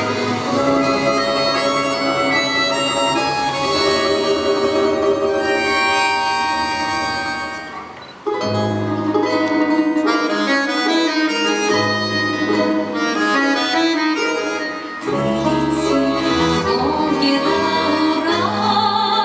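Ensemble of Russian folk instruments playing an instrumental introduction: a sustained melody on bayan (button accordion) and a wind instrument over plucked strings. The music fades out about eight seconds in, then a new rhythmic section starts with deep plucked contrabass balalaika notes under the accordion and strings.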